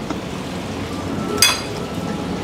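A single short clink of cutlery against a plate about a second and a half in, over a steady hiss of room noise.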